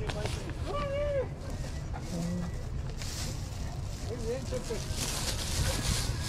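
Outdoor market ambience: a steady low rumble with faint voices of people talking in the background.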